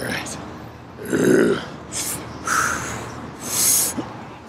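A man's forceful breaths and grunts of effort while lifting dumbbells: several short bursts about a second apart, the last a long hissing exhale.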